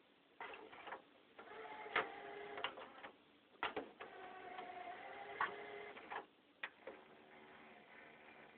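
CD player's loading mechanism whirring and clicking as a disc is fed into it: stretches of a steady motor whir broken by several sharp clicks.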